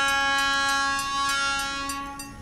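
Air horn of an ALCo diesel locomotive sounding one long blast as the train approaches a level crossing, the tone fading toward the end.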